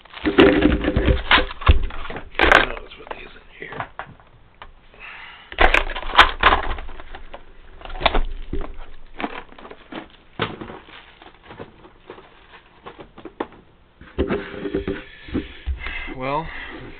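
Plastic storage cases and spiral notebooks being handled and set down on a desk: a string of knocks and clacks, loudest in the first couple of seconds and again about six seconds in.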